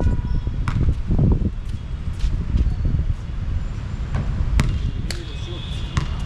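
A basketball being dribbled on an outdoor hard court: sharp bounces at irregular intervals over a steady low rumble.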